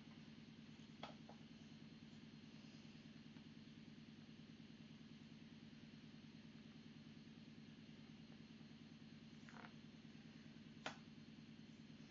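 Near silence: a faint steady low hum of room tone, with a few faint clicks, the clearest one near the end.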